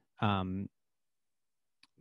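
Mostly speech: a man's drawn-out 'um' into a close microphone, then complete silence, broken near the end by a single short click just before he speaks again.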